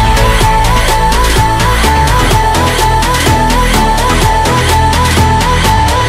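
Background music with a fast, steady beat and a held high tone throughout.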